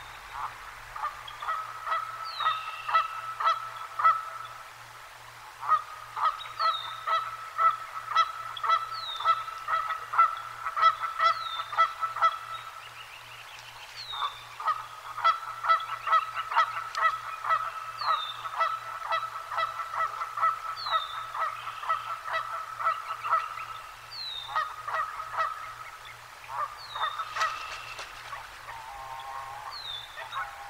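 A flock of geese honking in long rapid runs, with short pauses between the runs. Over them a songbird repeats a short high down-slurred whistle about every two seconds.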